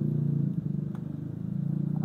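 Steady low engine rumble, with a faint click about a second in.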